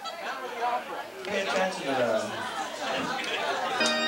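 Several people talking and chattering over one another in a room between songs. Near the end, music with steady held notes starts up.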